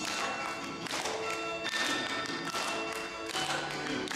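Instrumental accompaniment to a song, playing a passage without the voice, with a run of struck, pitched notes.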